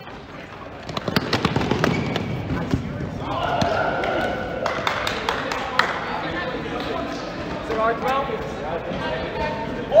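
Rubber dodgeballs bouncing and thumping on a hard gym floor as play starts, with a run of sharp knocks early on and players shouting over the play.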